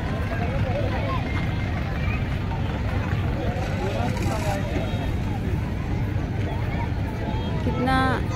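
Crowd chatter: many voices talking at once, none standing out, over a steady low rumble.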